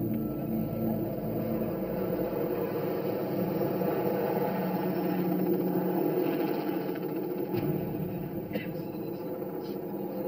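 Ocean waves breaking: a steady rushing noise, with a faint sustained drone underneath.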